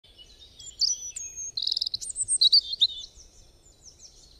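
Birdsong: high-pitched chirps, whistles and a quick trill, loudest in the middle and fading away near the end.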